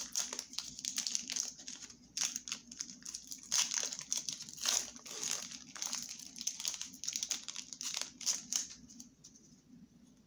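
Foil wrapper of a Pokémon TCG booster pack crinkling in irregular crackles as a stubborn pack is worked open by hand, dying down about nine seconds in.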